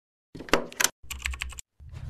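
Intro sound effect of rapid clicking, like typing on a computer keyboard, in two short bursts, followed near the end by the start of a deep, rumbling hit.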